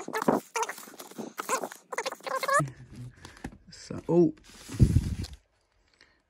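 Vinyl records in plastic sleeves squeaking and rustling as they are flipped through one after another in a crate: a quick run of short, high squeaks, then near the end a brief rustle as one record is pulled out.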